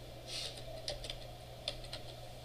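A few keystrokes on a computer keyboard, sharp clicks at uneven intervals as a search is typed into a browser, over a steady low hum.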